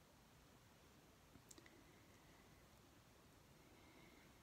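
Near silence: room tone, with a few faint clicks about a second and a half in.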